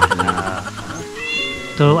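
An elderly man laughing, a short voiced laugh in a few bursts.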